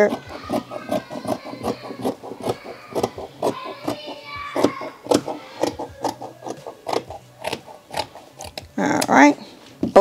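Scissors cutting through two layers of satin fabric: a steady run of short, crisp snips, several a second.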